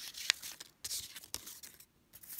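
Paper strips being folded and creased by hand: a run of short, irregular crinkly rustles, with a sharp crack of the paper about a quarter of a second in, thinning out toward the end.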